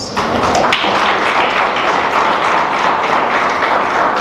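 Audience applause: many hands clapping together in a dense, steady patter.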